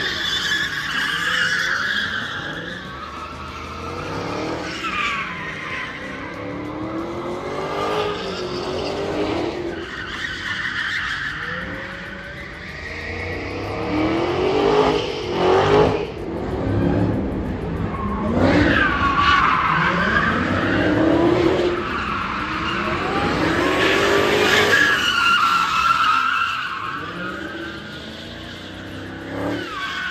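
Dodge muscle cars drifting in circles on a skidpad: tyres squealing and engines revving up and down in repeated swells. The loudest passes come in the second half.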